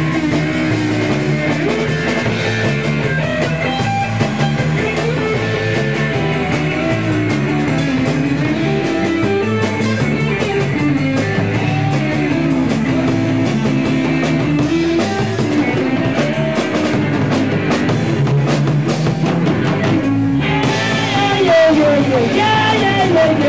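Live rock and roll band playing an instrumental passage: electric guitar over a drum kit with a steady cymbal beat. The cymbals drop out briefly near the end.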